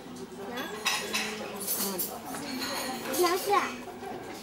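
Cutlery and crockery clinking at a breakfast table, with voices talking, a child's among them.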